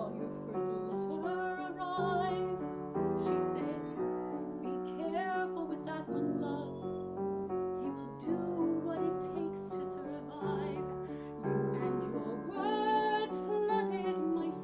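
Soprano voice singing a slow musical-theatre ballad with vibrato, accompanied by a Yamaha grand piano playing chords.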